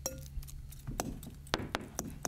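A metal fork clinking irregularly against a glass mixing bowl while avocado is mashed, about six clinks in all, the first with a brief ring. A low steady hum lies underneath.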